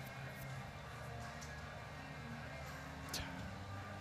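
Low arena room tone at a billiards match: a faint steady hum with a little murmur, and one short faint click about three seconds in.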